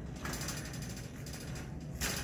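A fast, steady mechanical rattle of many small clicks, starting a moment in.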